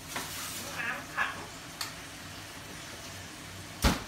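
Roast duck fat sizzling in a hot roasting pan just taken from the oven, with a few light clinks and one loud knock near the end.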